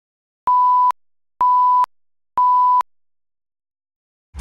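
Broadcast tape slate tone: three identical steady beeps, each about half a second long and about a second apart, marking the head of the programme tape before it starts.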